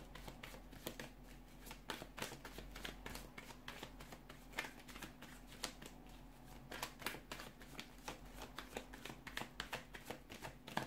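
A deck of tarot cards being shuffled by hand: a quick, irregular run of light card slaps and flicks, with a faint steady low hum underneath.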